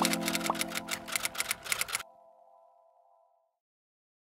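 End-card music: a fading chord with fast ticking percussion, which cuts off about two seconds in, leaving silence.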